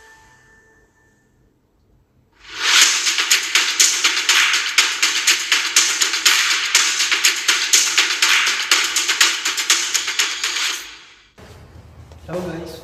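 Intro sound effect: a chime fading out, then a quiet gap. Then about eight seconds of loud, dense crackling hiss that stops suddenly. A man's voice begins right at the end.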